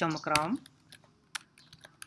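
Computer keyboard typing: several separate keystrokes tapped out one by one after a short spoken word at the start.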